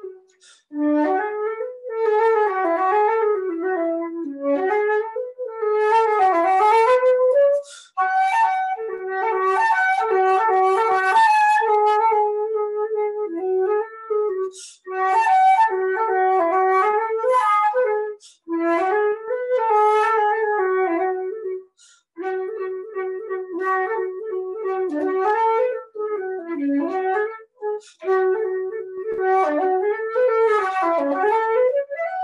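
Solo flute playing an unaccompanied melody in its lower-middle register, in phrases broken by short breath pauses. The line moves up and down, with a few longer held notes.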